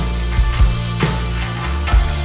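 A live worship band playing: held bass and keyboard notes, with electric guitar over a steady drum beat.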